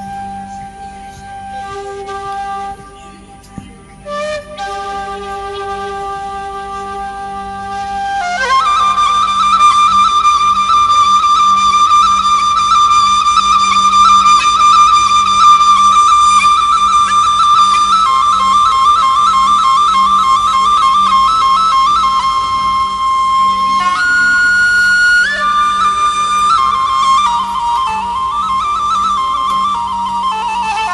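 Background music led by a flute playing long held notes, soft at first and then louder from about eight seconds in, with the melody shifting pitch near the end.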